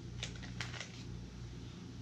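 A few short crinkles and taps from a QuikClot hemostatic gauze packet's wrapper being handled, bunched in the first second, over a low steady room hum.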